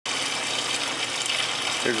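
Steady splashing of nutrient solution falling from the grow tray into the reservoir below, stirring up bubbles in the water.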